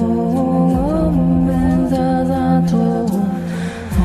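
Meditative music: a voice humming a slow melody with smooth gliding notes over a low steady drone, dipping briefly near the end.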